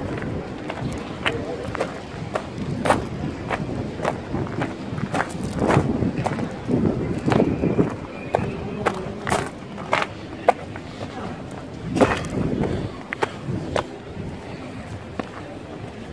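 Footsteps on a sandy dirt path, about two steps a second, with people talking in the background.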